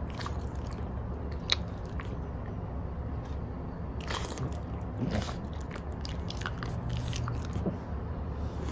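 A French bulldog licking and smacking its lips: scattered soft wet clicks and smacks, with small clusters about four seconds in and again near the end, over a steady low hum.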